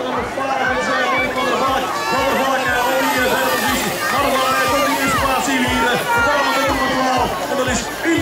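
Crowd of spectators cheering and shouting, many voices overlapping, over a steady low hum.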